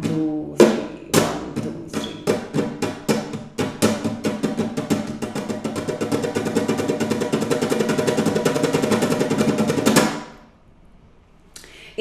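Nylon-string flamenco guitar strummed in the flamenco triplet (abanico): fingers down, thumb, turn back. It starts as separate strokes and speeds up into a fast, continuous roll of strums, then stops abruptly about ten seconds in.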